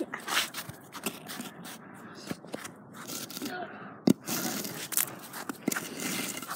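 Handling noise from a phone being carried and moved: irregular rubbing, scraping and clicking against the microphone, with one sharp knock about four seconds in.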